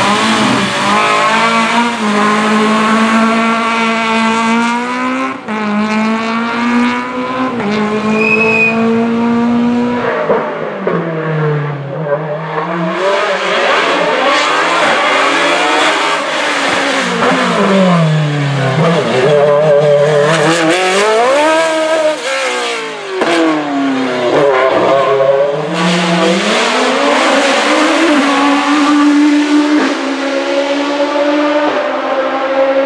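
Race car engines at full effort. For about the first ten seconds an engine runs at high, nearly steady revs with small shifts in pitch. After that a different, sharper engine's revs repeatedly drop and climb again every few seconds as it brakes and accelerates through tight bends on a hillclimb.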